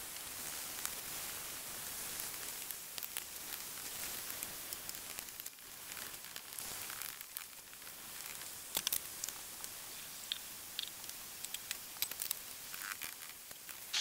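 Ground beef sizzling as it browns in a cast-iron skillet: a steady hiss with scattered crackles and spatters, and a few light clicks from a wooden spatula breaking up the meat.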